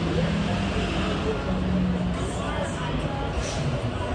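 Busy city street ambience: road traffic with a vehicle engine's steady low hum in the first couple of seconds, under indistinct chatter from people on a sidewalk patio and passers-by.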